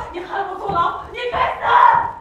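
A woman shouting and screaming angrily in long, strained cries as she struggles against being held.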